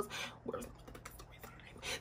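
A quiet pause in talking: faint breath and mouth sounds from the talker, with a couple of soft smudges of sound about half a second in and just before speech resumes.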